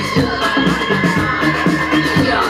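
Live electronic music: a held synthesizer line that glides up in pitch and then sustains, over a pulsing bass beat.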